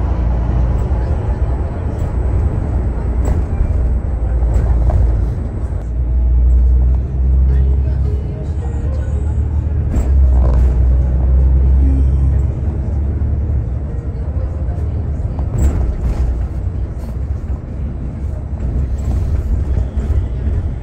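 Steady low rumble of a Higer coach's engine and tyres heard from inside the cabin while it drives.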